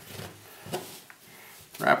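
Soft handling sounds as a Kevlar cord is pulled tight around a rifle barrel: a faint rustle of cord and fabric, with one light tick a little under a second in.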